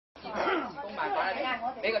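Speech only: people talking in Cantonese.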